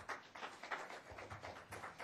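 A small audience clapping: many quick, irregular claps.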